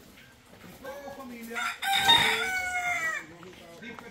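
A rooster crowing once: one call about two seconds long, starting about a second in, its pitch falling away at the end.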